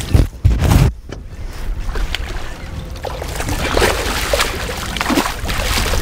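A hooked king salmon thrashing and splashing at the water's surface beside the boat as it is brought to the landing net. There are heavy thumps in the first second, then irregular splashing over a steady rushing background.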